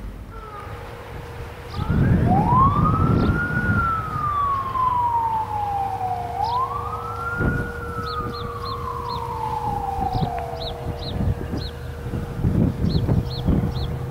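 An emergency vehicle's siren wailing, its pitch rising quickly and falling slowly, twice over, then fading out. A steady tone sounds underneath.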